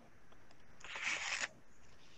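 A brief faint rustling hiss on an open microphone, lasting under a second, about midway through; otherwise low room tone.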